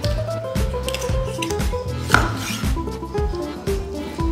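Kitchen knife cutting a whole raw chicken into pieces, knocking on a wooden cutting board, with one sharp knock about halfway through, over background music.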